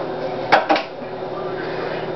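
Kitchenware knocking twice in quick succession, about half a second in, over a steady low hum.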